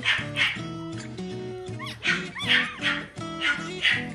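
Newborn Pomibear puppies crying in short, high-pitched squeals and whimpers, repeated every fraction of a second, over background music with steady sustained notes.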